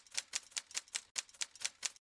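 Typewriter keystroke sound effect: about a dozen short, sharp clicks, roughly six a second, one for each letter of a title being typed onto the screen.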